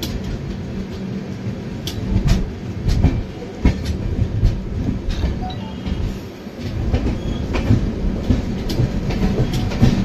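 Express passenger train running, heard beside its coaches: a continuous rumble of wheels on rails with irregular clicks and knocks as the wheels cross rail joints, dipping briefly about six seconds in.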